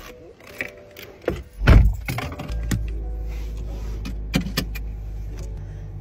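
Scattered clicks and rustles of handling inside a car, a loud low thump a little under two seconds in, then a steady low hum from the car that carries on.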